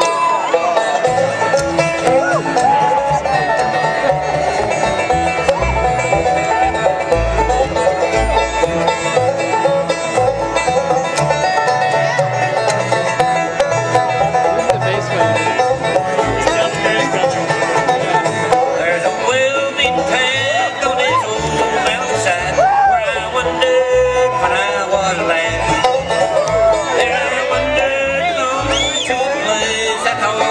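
Live bluegrass band playing a tune: fiddle, mandolin, acoustic guitar and banjo over a plucked upright bass.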